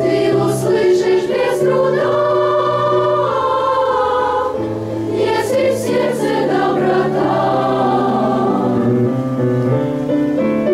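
Children's choir singing together over held accompaniment chords that change in steps beneath the voices.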